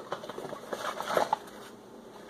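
Light handling noise of packaging: a cardboard box and a clear plastic clamshell rustling and clicking as they are slid apart, busiest in the first second or so, then quieter.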